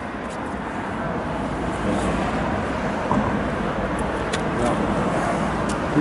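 Steady road traffic noise from passing cars, swelling slightly over the first second.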